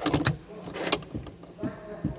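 A BMW key fob pushed into its dashboard slot, with a quick group of clicks and knocks, another sharp click just before one second in, and softer knocks and clicks later as the ignition electrics come on. The engine is not yet running.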